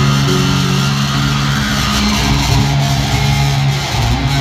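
Live electric guitar and bass guitar playing an instrumental rock cover in an arena, with held bass notes under the guitar and no vocals.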